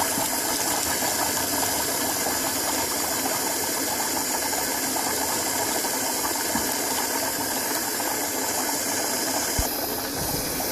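Electric in-tank fuel pump running steadily while submerged in a bucket of kerosene, a dense, even buzzing rattle, with liquid bubbling from the fuel pressure regulator's return. The pump is working against a regulator that bypasses at 58 psi while also feeding a homemade venturi jet pump.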